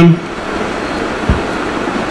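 Steady hiss of background noise between a lecturer's spoken phrases, with one brief low thump about a second and a quarter in.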